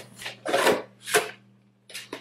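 Hand scooping and working potting soil inside a plastic container: a few short, gritty rustling scrapes. A faint steady low hum sits underneath.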